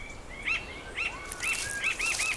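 A bird calling in a series of short, arched chirps, about two to three a second, starting about half a second in and coming slightly faster near the end.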